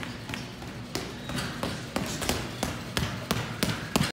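Boxing gloves striking bags, a quick uneven run of sharp punch smacks about two or three a second, the loudest near the end, over the steady background of a gym.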